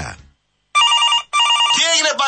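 A telephone ringing: two short electronic trilling rings, each about half a second long. A man's voice starts in just after the second ring.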